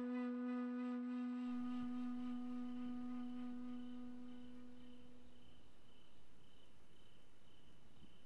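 A long held wind-instrument note from the score fades out over the first five seconds or so. It leaves faint crickets chirping in a steady, evenly spaced pulse.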